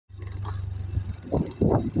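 Small motorbike or scooter engine running with a low, steady hum. Short bursts of a person's voice come in over it in the second half and are the loudest part.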